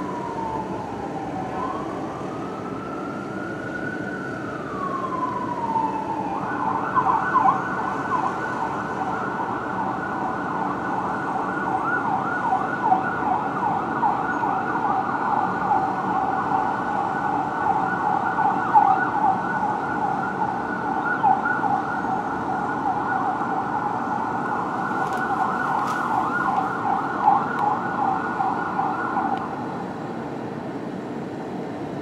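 Siren of a 2007 Spartan Gladiator fire engine responding code 3 with lights and siren. It sounds a slow wail, falling, rising and falling again, then switches to a fast yelp about six seconds in and keeps it up until it stops just before the end.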